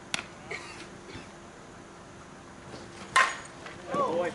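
A slowpitch softball bat hits the ball with a sharp, ringing ping about three seconds in, the loudest sound here. A smaller sharp click comes just after the start.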